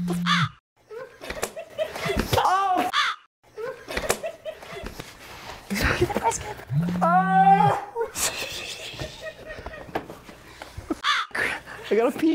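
Low electric buzz of a shock collar being triggered, twice, each about a second long, the second about seven seconds after the first. A man's strained yelps of pain come with the shocks, amid laughter.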